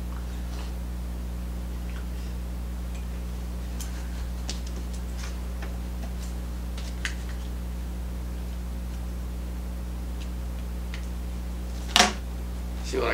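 Faint, scattered small ticks and clicks of a bobbin, thread and tools being handled at a fly-tying vise, over a steady low hum. A single sharper click comes at the very end.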